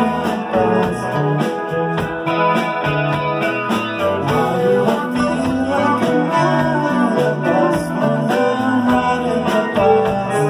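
A live band playing an instrumental passage: electric guitar chords over a stepping bass line and keyboard, with a steady beat.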